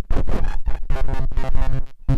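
Circuit-bent hamster-ball sampler, a modified voice-recording circuit looped through a voice-modulator, putting out glitchy noise chopped into rapid stutters. About a second in this turns into a buzzy, pitched looping tone, then cuts out briefly near the end.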